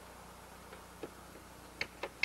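Two sharp, light taps over a faint steady hum: a worker on scaffolding tapping at the wall, the second tap near the end the louder.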